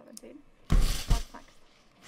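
Two quick low thumps inside a short burst of noise, about a second in.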